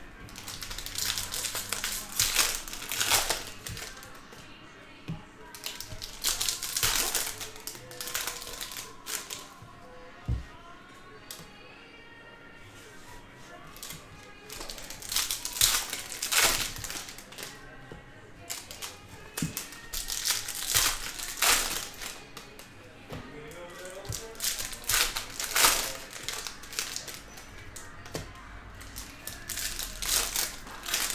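Foil trading-card pack wrappers crinkling and tearing in repeated bursts as packs are opened, with cards sliding and tapping against each other as they are flipped and stacked. Faint music plays underneath.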